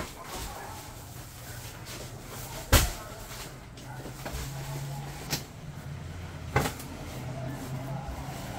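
A few sharp knocks, the loudest about three seconds in and two more later, over a low steady hum.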